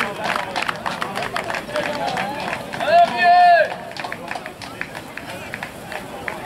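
Voices of people around a football pitch, with one loud high-pitched shout about three seconds in that rises and then falls over less than a second.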